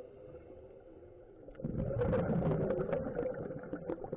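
Scuba regulator exhalation heard through an underwater camera housing: a burst of bubbles rushing and crackling for about two seconds, starting a little over a second and a half in, over a faint steady hum.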